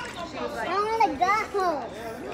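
A young child's high-pitched voice making a few wordless drawn-out sounds, the pitch rising and falling in arcs.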